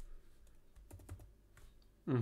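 A few faint keystrokes on a computer keyboard, clustered about a second in.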